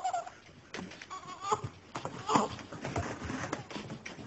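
A baby babbling, a few short wavering vocal sounds.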